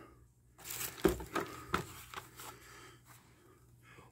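Cardboard shipping box and packaging handled by hand: the flap pushed back and contents rummaged through, giving a few short scrapes, rustles and taps in the first half, then fading to faint handling noise.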